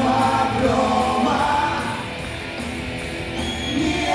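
Live rock band playing on stage: electric guitars and bass under sung vocals. The music is loud through the first two seconds, then drops a little quieter.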